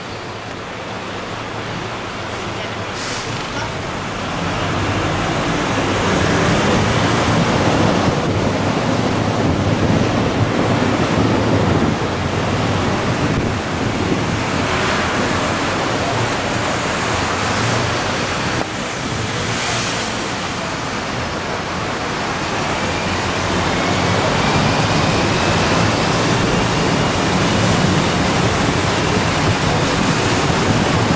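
Steady road noise of city traffic and a moving sightseeing bus's engine, heard from the bus's upper deck. It gets louder about five seconds in and stays loud.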